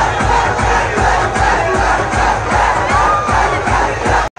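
A large outdoor crowd shouting and cheering, many voices at once, over a steady thumping beat of about three beats a second.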